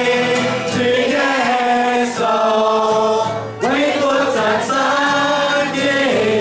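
A congregation singing a Chinese praise song in long held notes, led by a man's voice with acoustic guitar accompaniment. There is a brief break about three and a half seconds in before the next phrase.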